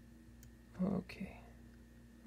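A man's brief breathy murmur about a second in, preceded by a single faint click, over a low steady hum.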